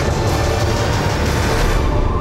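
Loud, dense trailer music over a heavy low rumble. Its bright, hissing upper layer cuts off suddenly near the end.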